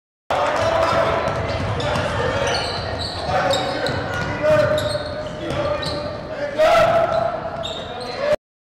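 Live gym sound of a basketball game: a ball bouncing on the hardwood floor, sneakers squeaking and players' voices calling out, echoing in a large gym. The sound begins abruptly about a third of a second in.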